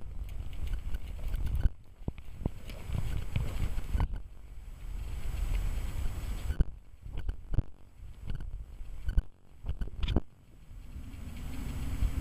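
Wind buffeting the microphone: an uneven low rumble that gusts and drops away several times, with a few soft thuds.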